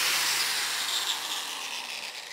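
Angle grinder with a Norton EasyTrim flap disc spinning down off the work, a hissing whine that falls in pitch and fades steadily.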